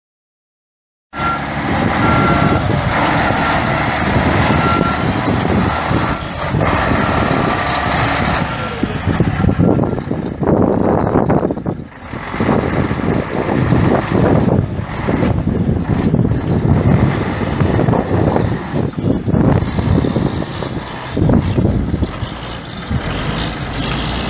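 Mack E6 six-cylinder turbo diesel of a 1980 Mack RD688 semi truck running, starting about a second in, with its backup alarm beeping through the first several seconds as the truck reverses. Later the engine sound rises and falls unevenly.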